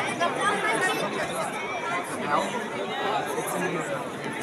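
Crowd chatter: many voices talking at once, none standing out, at a fairly steady level.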